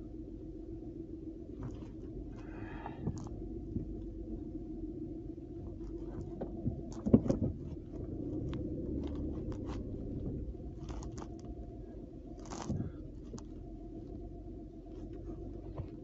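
Scattered small clicks and knocks over a steady low hum, with one louder knock about seven seconds in.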